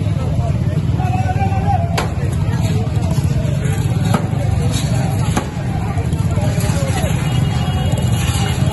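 Street recording of men's voices over a steady low rumble, with a few sharp knocks about two, four and five seconds in.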